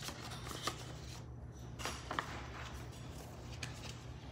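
Faint rustling and scattered light taps from rummaging through things in search of a sheet of paper.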